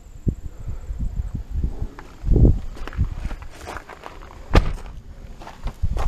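Irregular footsteps and bumps of handling on the microphone as the person moves around the car, with a louder thump about two and a half seconds in and a sharp knock at about four and a half seconds.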